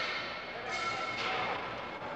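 Indistinct chatter of several voices, with a faint steady high-pitched tone running underneath from under a second in.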